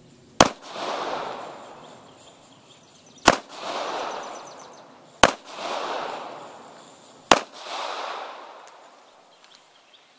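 Four shots from a Taurus TCP (PT 738) .380 ACP pocket pistol firing full metal jacket rounds, two to three seconds apart, each followed by a long echo. The pistol fires every round without a stoppage.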